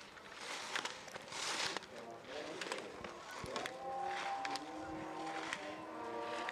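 Slalom skis scraping and carving on hard-packed snow, in swells about once a second as the skier turns through the gates. From about halfway, faint steady held tones sound in the background.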